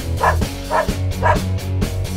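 A dog barking three times, about half a second apart, over background music with a steady bass beat.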